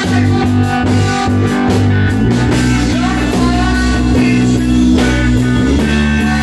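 A rock band playing live: electric guitar, electric bass and drum kit, with cymbals keeping a steady beat.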